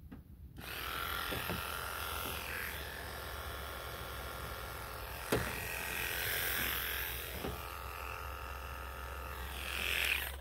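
Wahl KM2 electric animal clippers switched on about half a second in and running with a steady buzz as they trim the fur on a long-haired cat's ear. One sharp click about five seconds in.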